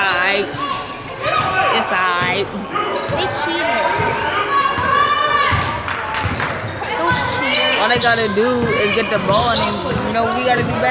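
A basketball bouncing on a hardwood gym court, with voices from players and spectators calling out across a large gym.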